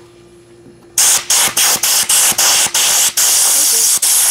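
Compressed-air blow gun blasting air through a waterjet cutting head's nozzle to clear a clog. A loud hiss starts about a second in, first in quick short bursts, then held steady; the air getting through is the sign the line is clear.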